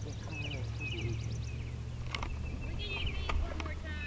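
Outdoor field ambience: short high chirps of birds several times over a low steady rumble, with faint distant voices and a couple of sharp clicks.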